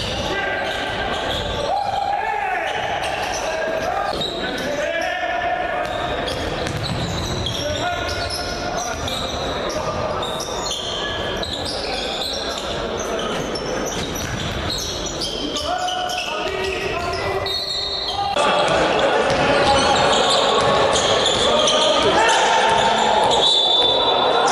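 Live sound of an indoor basketball game: voices of players and spectators with the ball bouncing on the hardwood court, echoing in a large sports hall. It gets louder about 18 seconds in.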